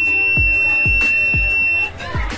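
Arduino-driven electronic buzzer sounding one steady, high-pitched beep for about two seconds, cutting off just before the end. It is the alarm signal the circuit gives after the seven-segment display counts to three.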